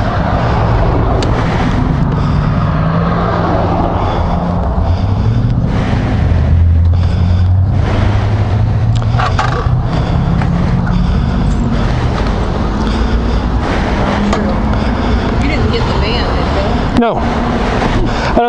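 Suzuki GSX-R600 inline-four engine idling with a steady, slightly wavering low hum, under street noise. There is a short sharp knock about a second before the end.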